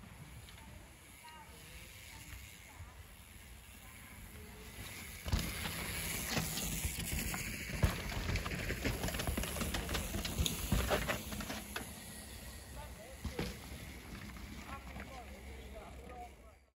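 A mountain bike riding past on a dirt trail through dead leaves: tyre noise with rapid clicks and rattles from the bike. It starts suddenly about five seconds in, is loudest through the middle, then fades.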